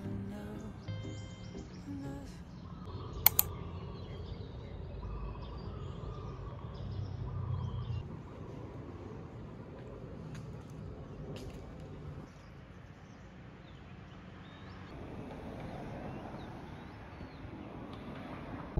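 Outdoor ambience: a steady low rumble with scattered bird chirps, and a single sharp click about three seconds in.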